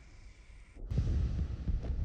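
Sound effects on an animated film's soundtrack: a faint low hum, then, after an abrupt cut about a second in, a deep rumble with uneven low pulses.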